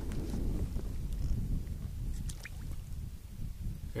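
Wind rumbling on the microphone over water lapping against a boat hull, with a few faint light ticks about halfway through.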